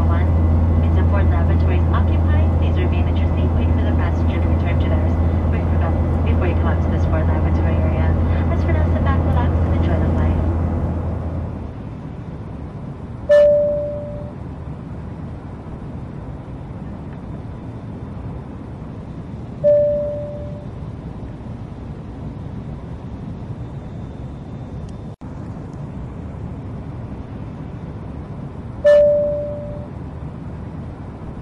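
Airliner cabin ambience: a loud, steady low engine drone for about the first eleven seconds, then a quieter steady cabin hiss. Over it a single-tone cabin chime sounds three times, about six and nine seconds apart, each ringing off over about a second.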